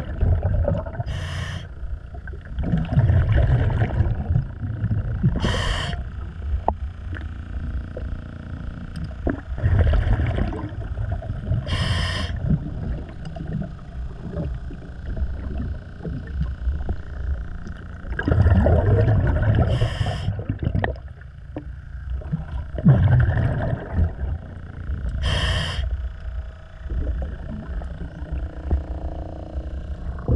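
Diver breathing through a regulator underwater: short hissing inhalations and longer bursts of exhaled bubbles, repeating every few seconds.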